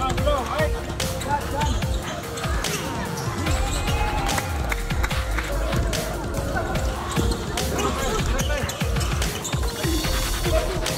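A basketball bouncing repeatedly on a hard indoor court as players dribble it up the floor, with crowd voices and music running underneath.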